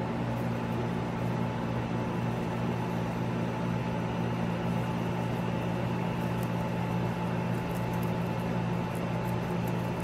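Steady low mechanical hum, unchanging throughout, with a few faint crackles in the second half.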